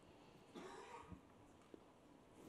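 Near silence with one faint, short cough about half a second in.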